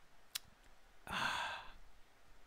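A man sighing: one breathy exhale of under a second, starting about a second in. A single short click comes just before it.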